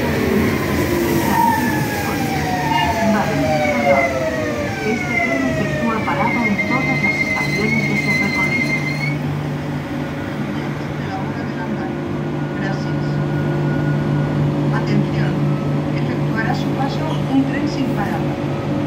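Renfe Civia class 464 electric multiple unit slowing to a stop at the platform: several electric motor whines fall in pitch as it brakes over the first six seconds, then a steady high whistle sounds for about three seconds. After that comes the steady low hum of the train standing.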